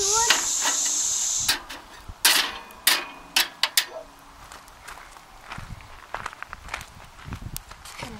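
Steel cooking grate scraping and clinking against the metal body of a Volcano camp stove as it is shifted with a grate lifter. There is a hissing scrape for about a second and a half, then a string of sharp metal clinks that grow sparser toward the end.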